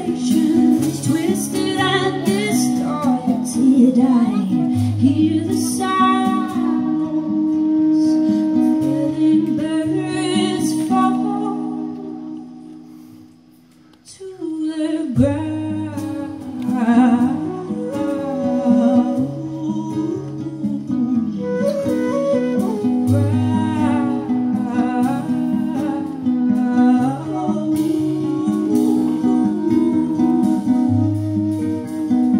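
Live acoustic band: a woman singing over her own classical guitar, with a wooden transverse flute playing long held notes and an electric bass underneath. About 12 seconds in the music fades almost to nothing, then comes back in strongly a couple of seconds later.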